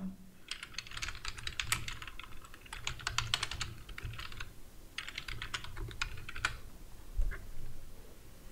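Typing on a computer keyboard: a quick run of keystrokes lasting about four seconds, a short pause, a second shorter run, then one louder keystroke near the end.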